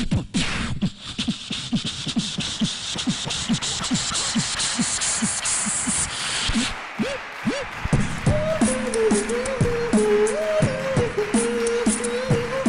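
Beatboxing into a handheld microphone: a fast beat of mouth-made kick and snare sounds, with a high hiss over the first six seconds. A hummed melody comes in over the beat about eight seconds in.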